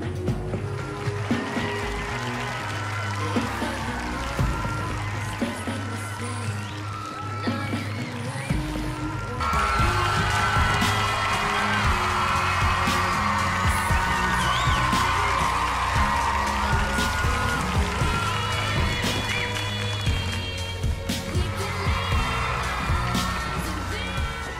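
Dance-routine music with a steady bass beat and a melody over it; it gets louder and fuller about nine and a half seconds in.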